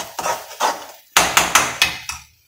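Steel spoon knocking and scraping against a steel kadai while stirring frying food: a run of sharp metallic clanks, a few in the first second, then a quicker cluster of about five.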